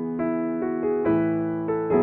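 Yamaha digital piano played solo in a slow, gentle style: single melody notes struck one after another over a held low chord, each ringing and fading, with the chord changing about a second in.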